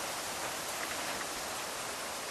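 Steady, even hiss of outdoor background noise with no machine running and no distinct events.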